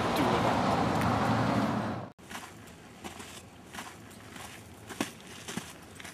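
Street traffic noise for about two seconds, cut off abruptly. Then, much quieter, a few scattered footsteps on a dirt trail.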